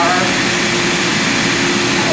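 Web splicer's vacuum blower running with a steady hiss and a low two-tone hum, drawing air through the vacuum bar to hold the splice tape in place.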